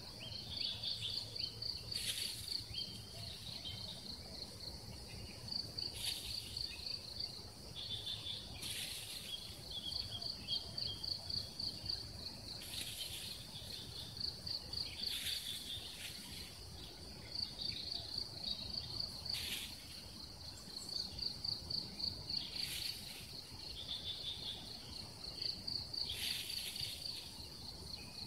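Insects trilling: a rapid, high pulsing trill that comes in bouts of a few seconds each, with short hissy rushes about every few seconds.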